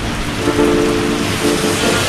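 Rain pouring down steadily. A held chord-like tone sounds over it from about half a second in until just before the end.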